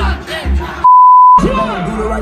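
Live hip-hop concert music with crowd noise, cut by a single steady high censor bleep of about half a second just before the middle, with everything else silenced under it. After the bleep, different live hip-hop music with a rapping voice plays.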